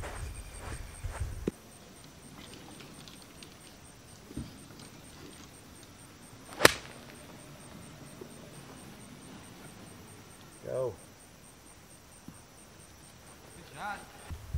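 A golf iron striking the ball once, a single sharp crack about seven seconds in.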